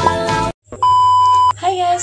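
Background music cuts off about half a second in. After a brief silence, a single steady, high electronic beep sounds for under a second, and then a woman's voice begins.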